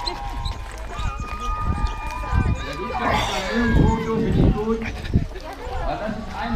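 A runner's footsteps thudding on the asphalt through a marathon water station, with a loudspeaker announcer's voice in the background.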